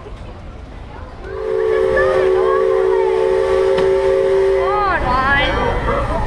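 A riverboat's steam whistle sounding one long chord of several steady notes, starting just over a second in and lasting about four seconds. Voices follow near the end.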